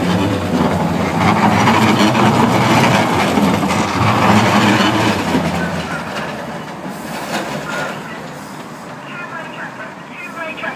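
A Sheffield Supertram light-rail tram passing close by on street-running rails, with a rumble of its wheels and running gear. It is loudest for the first five seconds or so, then fades as it moves away.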